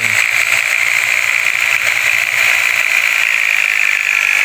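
Steady whirring of a power tool spinning the oil pump of a removed Toyota Avanza 1.3 engine to test whether the pump lifts oil after an engine rebuild.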